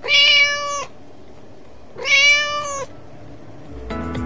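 Kitten meowing twice: two high, steady calls about two seconds apart, each under a second long.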